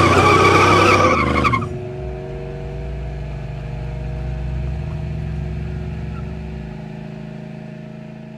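Small go-kart engines running with a wavering whine, cutting off abruptly about a second and a half in. A quieter steady drone of several held low tones follows and slowly fades.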